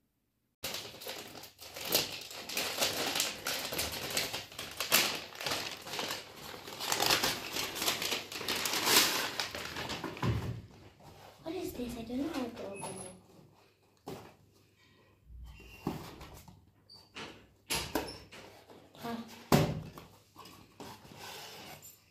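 Paper rustling and crinkling, busy for the first ten seconds and starting abruptly about half a second in, as a gift is unwrapped and pulled from a paper gift bag. Then quieter handling of a cardboard box with scattered taps and scrapes, and a brief humming voice around the middle.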